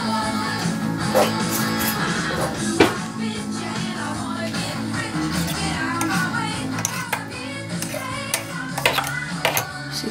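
A rock song with guitar playing on a radio, with a few light clicks of a metal spoon against a steel cup.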